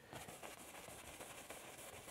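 One-inch brush swirling oil paint onto a canvas: a faint, steady, soft scrubbing of bristles on the surface.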